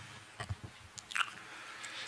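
A quiet pause with a few faint, short clicks and small noises close to a table microphone.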